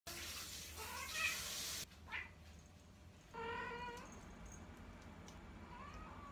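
A domestic cat meowing four times: short calls about one and two seconds in, a longer steady meow at about three and a half seconds, and a rising one near the end. A hiss under the first call cuts off suddenly just before two seconds.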